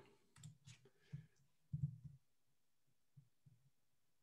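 A few faint, irregular clicks from a computer keyboard and mouse while code is pasted into an editor. The loudest comes about two seconds in.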